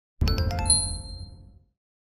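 Intro logo chime: a low hit under a quick run of bright bell-like notes that ring and fade away within about a second and a half.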